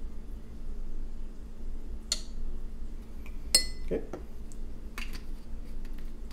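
Glass and metal clinks as a bottle is handled and syrup is poured into a cocktail glass: a sharp clink about two seconds in, a louder ringing clink a second and a half later, then a few light taps.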